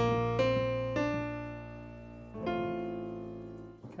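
Piano playing a B-flat chord with an added C and D (B-flat add2) over a B-flat octave in the bass. Notes are struck in the first second and again about two and a half seconds in, each left to ring and fade.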